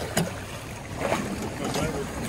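Sea water sloshing and splashing against the side of a small boat, with wind on the microphone and a brief knock just after the start.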